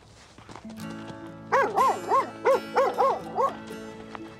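A cartoon rough collie barking: a quick run of about eight short barks starts about a second and a half in, over background music with held chords.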